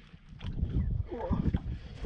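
Wind buffeting the microphone over the low wash of water around a small open boat at sea, with a short vocal sound about a second in.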